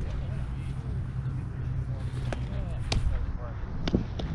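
Outdoor ball-field ambience: a steady low wind rumble and faint distant voices, broken by a few sharp pops of baseballs striking leather gloves, the loudest near the end.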